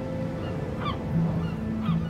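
A few short gull cries, about a second in and again near the end, over sustained, soft background music.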